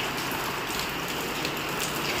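Steady rain falling on a tiled outdoor walkway, an even continuous hiss.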